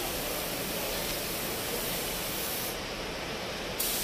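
Compressed-air paint spray gun (gravity-feed, cup on top) spraying paint onto a car bumper: a steady, even hiss of air and atomised paint. The hiss turns duller for about a second near the end.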